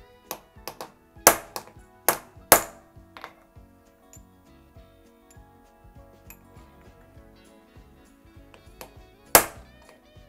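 A hammer tapping a punch to drive a new bushing into a classic Mini Cooper S rocker arm, with sharp ringing metal taps. A run of taps comes in the first three seconds, the loudest three between about one and two and a half seconds in, then one more loud tap near the end.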